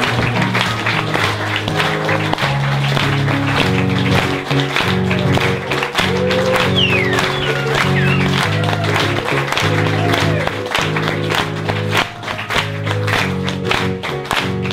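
Live instrumental curtain-call music with a steady bass line, under continuous applause and clapping from the audience and the cast.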